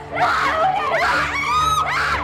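A girl screaming and sobbing in fear, with several high-pitched cries, the highest near the end.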